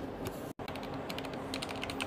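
Keys of a mechanical keyboard being pressed, clacking, with a quick run of keystrokes from about a second in.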